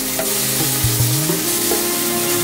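Meat skewers sizzling on a metal grate over glowing charcoal, with a steady fizzing hiss, under background music.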